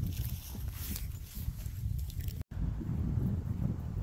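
Wind rumbling on the phone microphone, with faint rustling and soft steps in dry leaves and grass. The sound drops out for an instant at a cut about two and a half seconds in.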